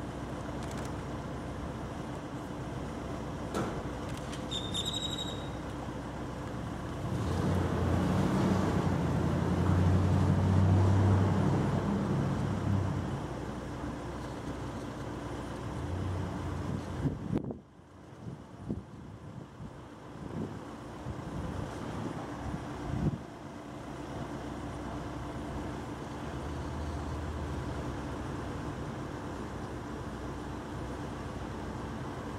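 Street ambience with a steady low hum. A motor vehicle engine rumbles louder for several seconds starting about a quarter of the way in, then fades. A few short knocks follow past the middle.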